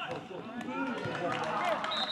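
Footballers shouting and calling to each other on the pitch during play, several voices overlapping, with a few short knocks in the second half.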